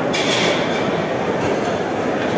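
Steady, loud rumbling din of a busy dining hall, with a steel serving trolley rolling across the floor.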